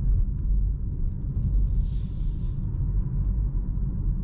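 Steady low road and tyre rumble inside the cabin of a Hyundai IONIQ 5 electric car on the move, with no engine note. A brief soft hiss comes about halfway through.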